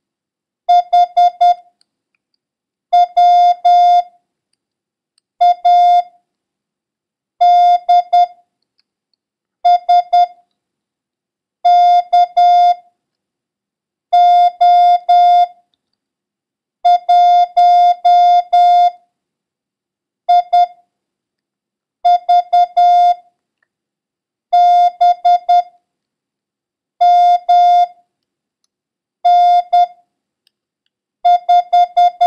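Morse code sent as a steady beeping tone at one pitch, keyed in dots and dashes, one character at a time with pauses of about a second between characters. About a dozen characters go by. It is a copying drill of random letters and numbers for learning the code.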